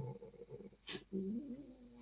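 A faint click, then a low, drawn-out vocal sound lasting just under a second.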